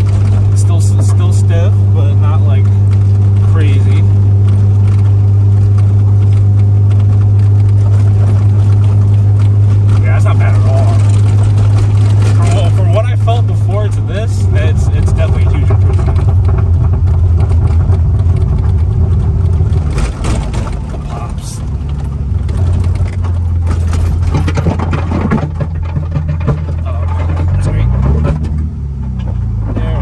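BMW Z3's engine heard from inside the cabin, running at a steady pitch while cruising. About halfway through it turns uneven and eases off. Near the end its pitch rises as the car accelerates.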